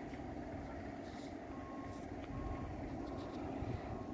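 Faint, steady low rumble of construction machinery with a distant electronic warning beeper, of the kind fitted to reversing construction vehicles or moving equipment, sounding three short beeps around the middle.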